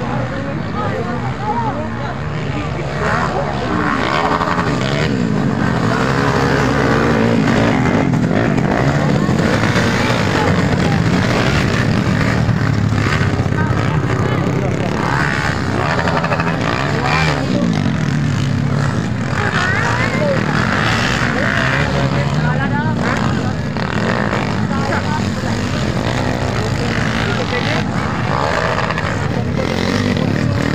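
Several small underbone motocross bikes racing on a dirt track, their engines revving up and down as they pass and pull away, mixed with spectators' voices.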